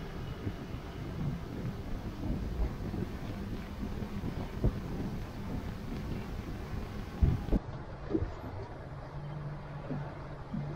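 Fishing boat under way on open water, pushed by its 150 hp outboard: a rumbling mix of motor, hull and water noise with wind buffeting the microphone, and a couple of knocks. About three quarters of the way through it changes to a quieter, steadier low hum.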